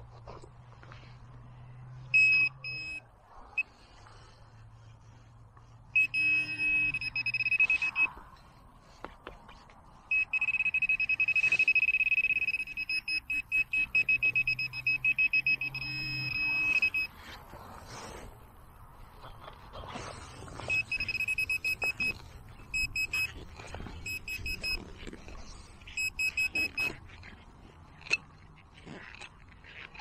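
Handheld metal-detecting pinpointer probed into a dug hole, sounding a high-pitched electronic tone in fast pulsed runs and in one long continuous run of about seven seconds in the middle, signalling a metal target in the soil. Short scrapes and clicks of digging in soil come between the tones.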